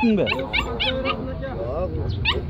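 Puppies yipping and whimpering: a quick run of short, high-pitched cries, several a second.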